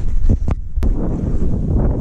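Wind buffeting the microphone of a moving action camera: a loud, uneven low rumble, with two sharp knocks about half a second and just under a second in.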